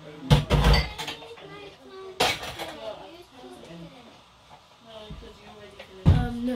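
Dishes clattering in a kitchen sink as they are washed, with two loud clatters, one near the start and one about two seconds in. Voices talk in the background.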